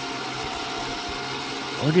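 Trailer-mounted Rough Country electric winch motor and gearing running steadily while it pulls a vehicle onto the trailer. It doesn't sound like it struggles, even though it runs on the battery alone.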